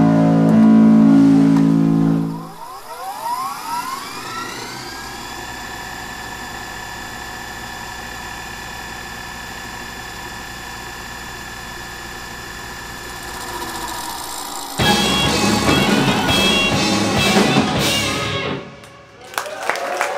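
A live rock band (electric guitar, bass, drums and keyboard) cut through by a tape fast-forward effect: after a loud opening chord the sound glides up in pitch and holds as a steady, quieter high drone for about ten seconds. About three-quarters of the way through, the band's playing returns suddenly and loud, then breaks off shortly before the end.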